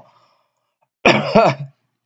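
A man clears his throat briefly, in one short two-part burst about a second in.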